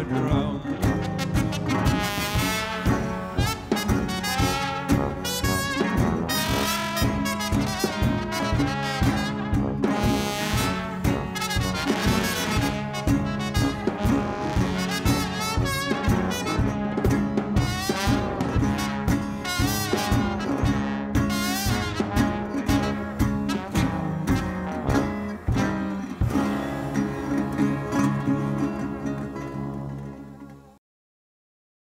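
A small jungle-blues band plays an instrumental passage live: trumpet and trombone lines over tuba, drums and guitar. Near the end it settles onto a held closing chord that fades out.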